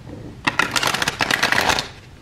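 A tarot card deck being shuffled by hand: a rapid flutter of card edges starting about half a second in and lasting just over a second.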